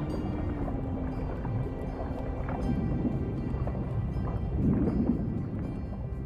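Documentary background music with a low held note that slides down and fades after about two seconds. Two swells of low rushing, water-like noise follow, the louder one about five seconds in.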